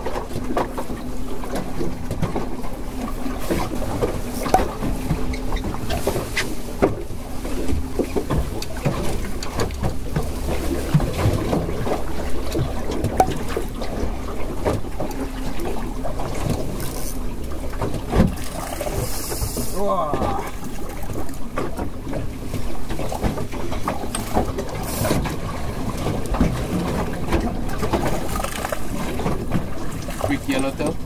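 Steady wind and water noise around a small open fishing boat in rain, with frequent small clicks and knocks. A low steady hum runs through roughly the first dozen seconds.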